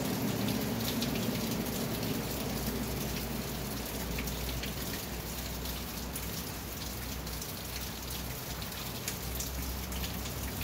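Steady rain on the roof of a covered riding arena, a continuous hiss with many scattered sharp drop ticks.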